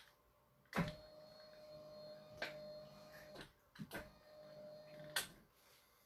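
A small electric appliance switching on with a click, humming steadily for about two and a half seconds and clicking off, then switching on again and humming for about a second and a half before clicking off.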